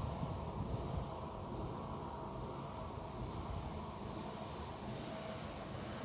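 Steady, low outdoor background noise: a low rumble with a faint hum, and no single event standing out.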